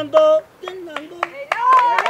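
Hand drumming breaks off, and a voice holds a short note. After a brief lull come voices, rising near the end, with a few scattered hand claps.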